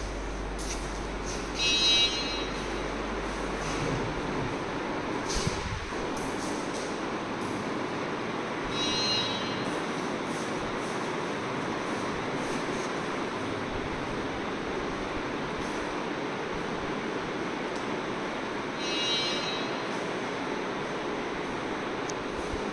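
Steady rushing background noise, with three brief high-pitched chirps spaced several seconds apart.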